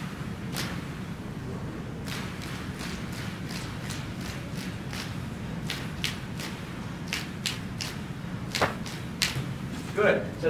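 A roomful of people blowing short puffs of air together in the rhythm of a written exercise, counting silently; the uneven rhythm of quick puffs runs mostly from about two seconds in. A steady low hum lies underneath.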